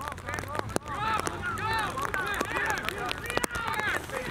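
Rugby players shouting calls to each other during open play, several short voices overlapping, with scattered light ticks over the top.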